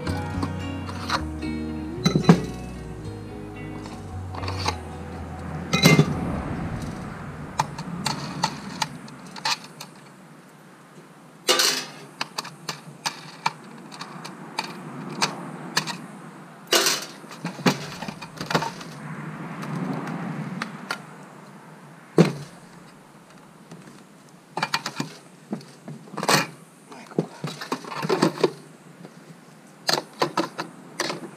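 Metal clinks and knocks of stainless-steel sluice parts: riffle trays and expanded-metal grates being lifted, set down and fitted together, in single sharp knocks and short clattering runs. Background music plays under them and ends about a third of the way in.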